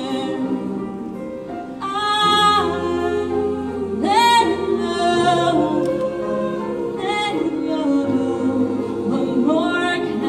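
Show choir singing in harmony, with a female soloist on a handheld microphone carrying a wavering lead line that swells about two and four seconds in, over sustained low bass notes that shift pitch every few seconds.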